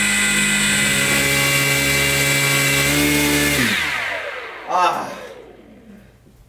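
A small electric motor running with a steady whine under power, then winding down in pitch and dying away over about a second as the power to the test rig is switched off.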